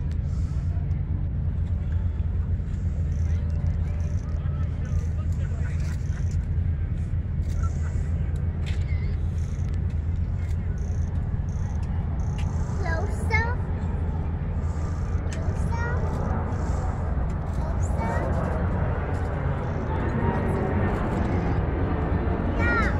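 Twin-engine jet airliner flying in low overhead, its engine noise building over the last few seconds as it approaches, over a steady low rumble and faint background voices.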